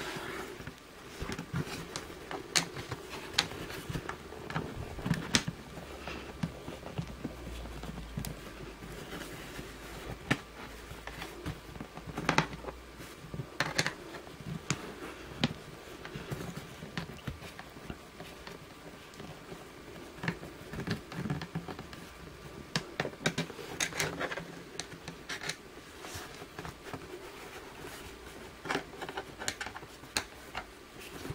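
Screwdriver backing screws out of the exit sign's housing: scattered small clicks and scrapes at irregular intervals.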